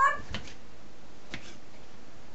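A kitchen knife cutting chikuwa against a plastic cutting board, giving two short taps about a second apart. Right at the start, a short rising voice-like cry ends.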